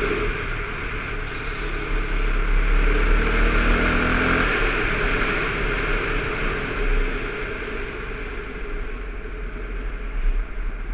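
Dirt bike engine running on the move, with heavy wind rushing over the helmet-mounted microphone. The engine note fades about halfway through and the sound eases off toward the end as the bike slows.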